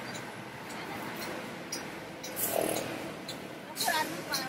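Thin plastic bag crinkling in short bursts as papayas are put into it, over a steady background of outdoor street and market noise. A brief voice comes in near the end.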